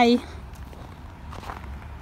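A woman's voice finishing a phrase, then faint footsteps on icy, snow-covered pavement over a low, steady rumble.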